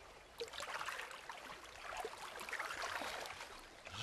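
Faint sounds of a wooden canoe paddle pulling through calm river water: soft swishing and trickling that swell and fade with the strokes.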